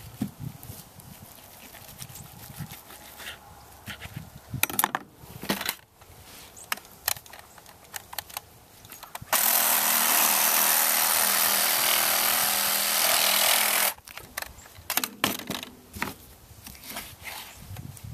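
Electric reciprocating saw cutting through lamb bone to separate the shank from the shoulder roast. It runs steadily for about four and a half seconds from about halfway in, then stops suddenly. Before it there is quiet knife work on the meat, with a few knocks and scrapes on the cutting board.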